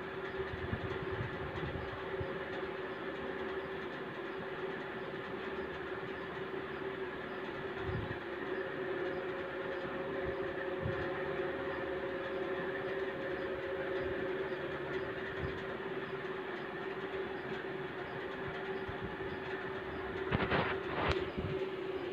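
A Nili buffalo being hand-milked: milk squirting in streams into a steel pot, a steady hissing patter with a few steady ringing tones. There is a short louder noise near the end.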